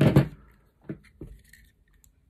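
A few light clicks and knocks as a plastic surface socket and a pair of pliers are handled on a desk, with three brief taps starting about a second in.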